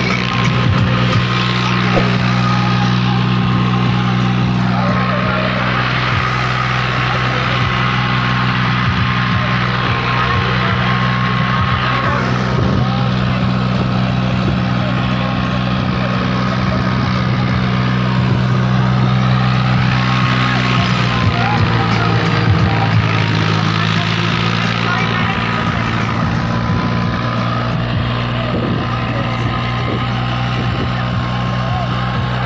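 John Deere 5105 tractor's three-cylinder diesel engine running steadily under load as it pulls a cultivator and harrow through the soil.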